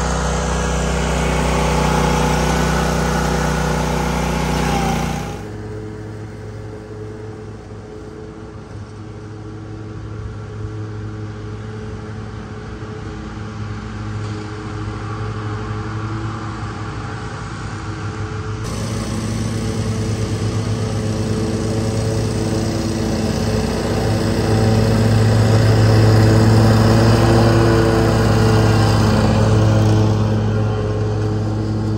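Commercial mower engines running. A steady engine for the first five seconds, then after a cut an Exmark Vertex stand-on mower's engine, growing louder as it drives closer and loudest near the end.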